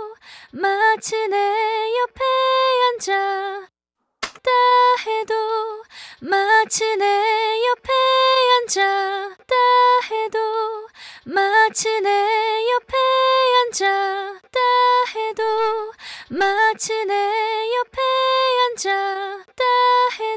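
Unaccompanied female lead vocal track singing a short Korean phrase, looped several times, with a brief gap about four seconds in. It plays through a Pultec-style EQ plugin (Kiive Audio Warmy EP1A), bypassed at first and switched in partway through.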